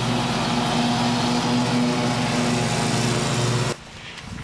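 Zero-turn riding lawn mower running steadily while cutting grass, a constant engine hum. It cuts off abruptly near the end.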